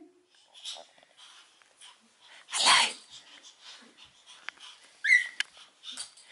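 A baby's excited breathy shriek, loudest about two and a half seconds in, then a short high-pitched squeal about five seconds in, with a few faint small knocks between.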